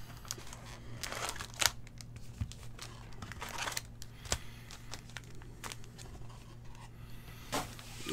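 Wrapped trading card packs rustling and crinkling as they are lifted out of a cardboard box and stacked, with scattered soft taps and clicks. A steady low hum sits underneath.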